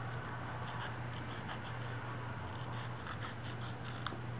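Small scissors cutting around a paper cut-out: a run of faint, quick, irregular snips over a steady low hum.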